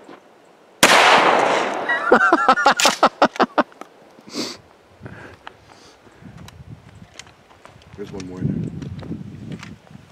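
A single shotgun slug shot: one sudden, loud blast under a second in that rings out for about a second. A man laughs just after it.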